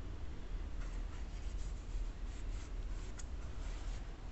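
Hands rubbing and handling a textile-and-rubber basketball sneaker, a series of short scratchy rustles as the fingers press and slide over the upper and heel counter.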